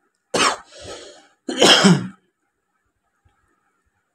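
A person coughing and clearing their throat: two rough bursts about a second apart.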